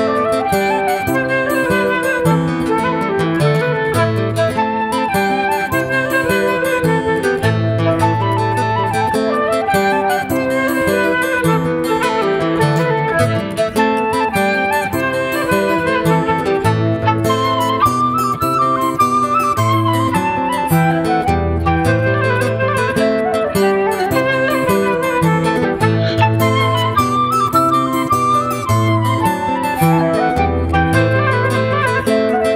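Transverse flute playing a traditional folk tune melody over a fingerpicked steel-string acoustic guitar accompaniment with a moving bass line.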